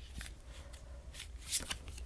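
Tarot cards being handled off a deck: a few faint, short slides and flicks of card stock, with a low steady hum underneath.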